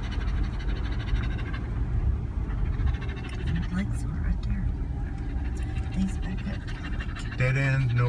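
Low, steady rumble of a car's engine and tyres heard from inside the cabin while it rolls slowly along a paved drive. A man's voice starts near the end.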